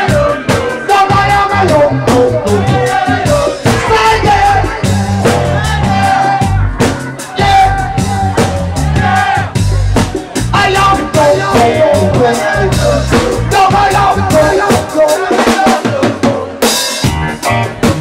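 Live funk-blues band playing an instrumental passage: drum kit with snare and bass drum driving the beat under bass guitar, electric guitar and keyboards. A cymbal crash comes near the end.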